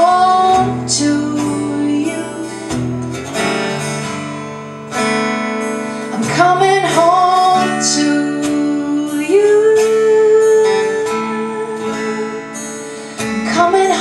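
Live solo acoustic guitar strummed steadily under a singing voice that slides into and holds long notes, one held for over a second past the middle.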